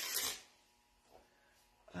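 Paper towel crinkling and rustling as it is handled on the floor, stopping half a second in; then near quiet with one faint tap a little after a second in.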